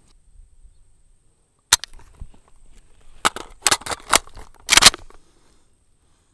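Sharp metallic clicks and clacks of an AK rifle being reloaded in the prone: the old magazine swept out, a new one rocked in, and the bolt cycled. There is one click about two seconds in, then a quick run of clacks ending in a loud double clack about five seconds in.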